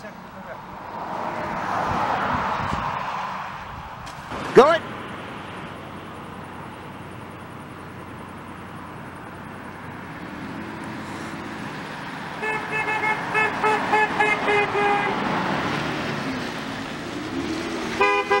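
A U-Haul box truck towing a car trailer approaches and goes by with its tyres and engine running. As it passes, its horn sounds a rapid string of short toots, with a few more toots near the end.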